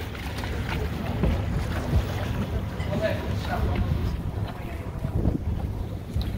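Small wooden tour boat under way on a river: a steady low rumble of the boat with wind on the microphone.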